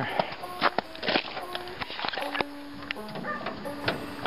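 Door of a VW convertible body being worked open and shut: a series of latch clicks and light knocks. The door works smoothly, "nice and slick". A brief held tone sounds about halfway through.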